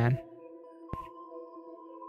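Soft ambient background music: a few quiet tones held steady under a pause in the narration, with one faint click about halfway through.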